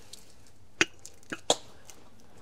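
Three short, sharp clicks or knocks, the first a little under a second in and the other two close together about a second and a half in, over a faint steady room background.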